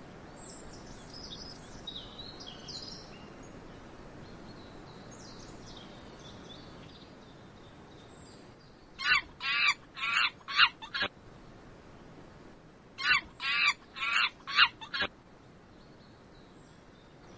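Monkeys calling: two bursts of about five loud, sharp, high-pitched calls in quick succession, a few seconds apart. Faint bird chirps come before them.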